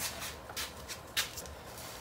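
Power cord being handled and dragged, with rustling, rubbing and a few clicks; the sharpest click comes about a second in.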